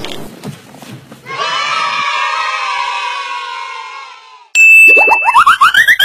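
Edited-in comedy sound effects: a sustained ringing chord that slowly fades over about three seconds. Near the end a steady high beep cuts in, followed by a fast run of short rising tones that climb higher and higher.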